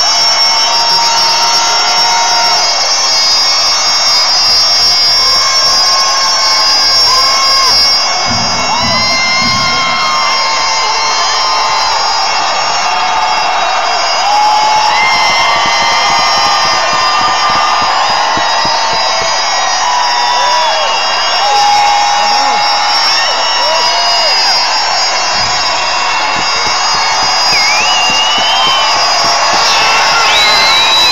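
Bagpipes played live through an arena PA: steady drones held under a chanter melody, with a crowd cheering and shouting throughout.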